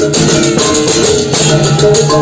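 Balinese baleganjur processional gamelan playing loudly: fast clashing cengceng hand cymbals, kendang drums and repeated ringing gong-chime notes.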